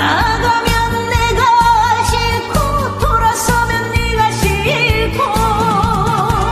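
A woman singing a Korean trot song live over a backing track with a steady beat, holding notes with a wavering vibrato.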